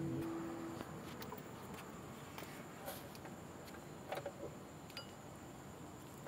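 Quiet room tone with a few faint, scattered light clicks, and a faint steady hum during the first second.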